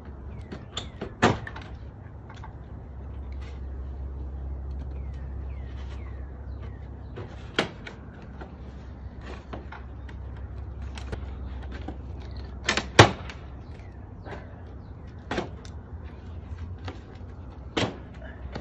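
Irregular sharp knocks, clicks and scrapes from gloved hands and a tool working at a house's roof eave and soffit, with the loudest knock about 13 seconds in, over a steady low rumble.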